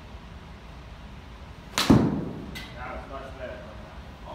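Golf club striking a ball off a hitting mat on a full swing: one sharp crack about two seconds in, echoing briefly in the hall, followed by a softer click.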